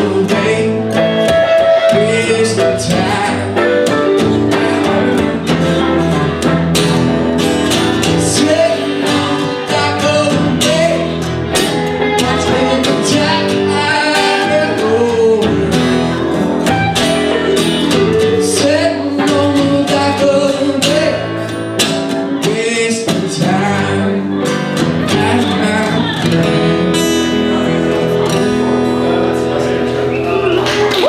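A live song played on an electric guitar and a strummed acoustic guitar, with a man singing.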